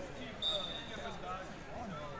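Voices and chatter from the crowd in a large hall, with one short, steady, high-pitched whistle blast starting about half a second in.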